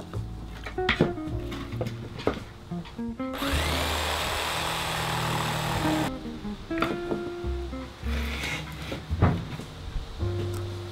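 Background acoustic guitar music with scattered wooden knocks as pallet boards are handled on a table. A bit past three seconds in, a power tool's motor spins up with a rising whine, runs for nearly three seconds, and cuts off suddenly.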